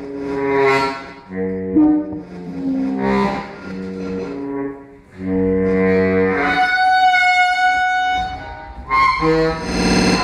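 Saxophone playing long held notes, layered with live electronic processing of recorded train sounds, so that several pitches sound at once. A higher held note comes in about six and a half seconds in.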